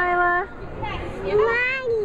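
A toddler's high voice making drawn-out wordless sounds, one gliding up and back down in pitch about a second in.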